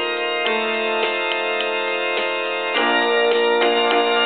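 Gulbransen Digital Hymnal DH-100 playing a hymn accompaniment in its demo mode at 105 beats per minute: sustained keyboard chords over a light, even beat. The harmony shifts to a new chord a little under three seconds in.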